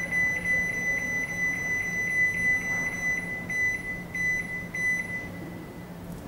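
Microwave control-panel buzzer beeping rapidly, a high electronic tone that runs almost unbroken as the plus button steps the clock's minutes up one by one. It stops about five and a half seconds in.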